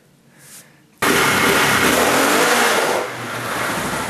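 Loud engine roar that cuts in suddenly about a second in, steady and dense, easing slightly about three seconds in.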